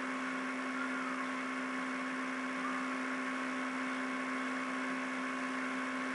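Steady electrical hum with a constant low tone and a few fainter tones above it, over an even hiss: the background noise of a home voice recording, with no speech.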